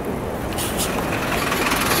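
City bus approaching and passing close by, its engine and tyre noise growing louder.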